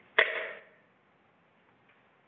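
A single short knock about a fifth of a second in, with a brief ringing tail that fades within about half a second, over faint hiss.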